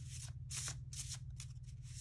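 Tarot deck being shuffled by hand, cards slid from one hand into the other in a quick run of short swishes, about three a second.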